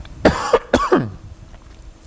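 A man coughing, a short run of coughs in quick succession in the first second.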